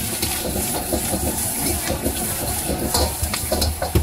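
Steam hissing and food sizzling in a hot wok of noodles and greens as liquid is added and stirred, over a steady low rumble from the gas wok burner.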